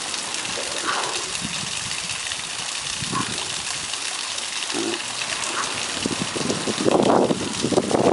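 River water rushing steadily over rocks. A louder, muffled sound comes in near the end.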